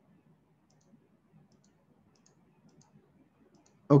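Faint, scattered clicks of a computer mouse, about eight over the few seconds, over a low hum of room noise. A man's voice starts at the very end.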